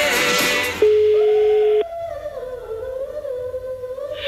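Telephone ringback tone as an outgoing call rings out: one steady, mid-pitched beep lasting about a second, starting about a second in, over background music with a wavering hummed melody.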